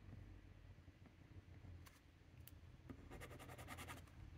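Faint scratching of a TWSBI Go fountain pen's nib on card: two light ticks, then near the end about a second of quick back-and-forth strokes, roughly a dozen a second. The pen is starved of ink, which pools in the pen without reaching the nib.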